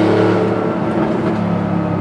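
Supercharged air-cooled flat-six of a 1995 Porsche 911 Carrera 2 (993) RWB running at a steady pitch while cruising, heard from inside the cabin.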